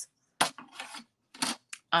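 A few brief rustles and clicks of cardstock, paper and a clear plastic sleeve being handled, the sharpest about half a second in and about a second and a half in.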